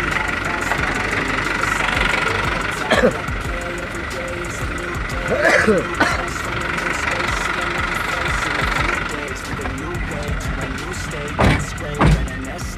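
A motor vehicle's engine idling steadily, with short bits of voices over it.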